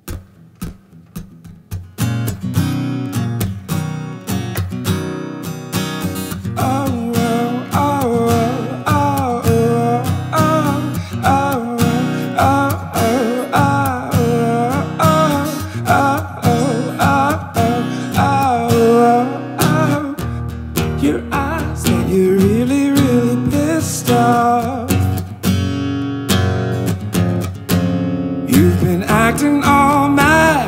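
Acoustic guitar strumming the introduction of a pop-folk song, starting about two seconds in, with a man singing a wordless melody over it.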